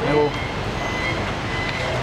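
A vehicle engine idling close by, a steady low hum under street noise, with a short spoken word at the very start.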